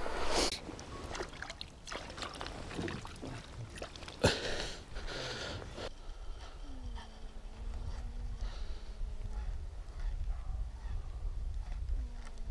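Handling sounds aboard a small fishing boat drifting on a river: a sharp knock about four seconds in, followed by a brief rush of noise, over a low rumble, with a faint steady hum in the second half.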